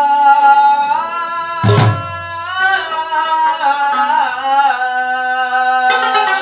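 A male singer holds long, sliding melismatic notes in a qawwali-style opening, accompanied by a plucked rabab. A single deep hand-drum stroke lands just under two seconds in.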